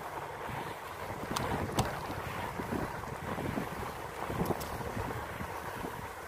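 Wind rushing over the microphone of a bicycle rider moving along a street, a steady noise mixed with road rumble, with a few faint clicks about a second and a half in and again near four and a half seconds.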